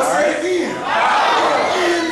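Loud shouted voices in a church: a preacher's raised, strained shout with the congregation calling out along with him, in two phrases with a short break between them.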